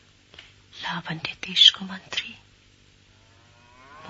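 Radio-drama dialogue: a voice speaks a short phrase about a second in, followed by a lull. Near the end a drawn-out pitched voice-like sound rises in pitch.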